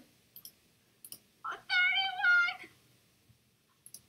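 A few soft clicks, like a computer mouse, then a high-pitched call in two parts lasting about a second.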